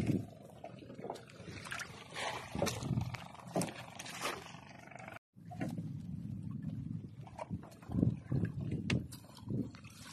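Rustling and knocking of a wet mesh fishing net being hauled and handled, over a low rumble on the microphone; the sound drops out briefly about five seconds in.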